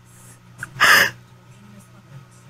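A woman lets out one short, breathy gasp of laughter about a second in.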